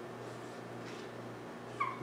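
Dry-erase marker writing on a whiteboard, with short high squeaks near the end, over a low steady room hum.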